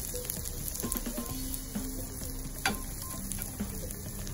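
Sliced shallots frying in oil in a clay pot, a steady sizzle, with a metal spatula stirring and a sharp knock about two-thirds of the way through as chopped tomatoes go into the pot.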